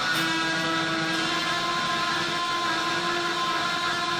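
Electric guitar played slowly through a delay effect, long held notes sustaining and overlapping into a steady wash.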